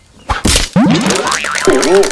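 A whack followed by a cartoon "boing" sound effect, a springy tone that wobbles up and down over and over and slowly dies away. Hand clapping starts about a second in.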